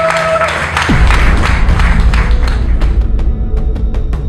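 Audience applauding, joined about a second in by closing music with a heavy, deep beat that takes over as the clapping dies away.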